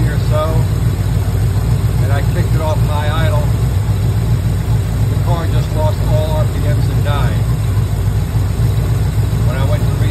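V8 engine with a Holley 4160 four-barrel carburetor idling steadily, warmed up to operating temperature with the choke open.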